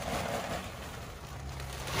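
A plastic bag of topsoil rustling as loose soil is poured from it onto the ground around a shrub's root ball. A low steady hum comes in during the second half.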